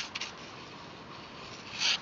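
Pencil sketching lightly on paper: a few short scratchy strokes near the start, then faint rubbing, with a brief louder hiss near the end.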